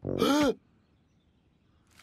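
A man's short, loud wordless cry lasting about half a second, its pitch rising and then falling.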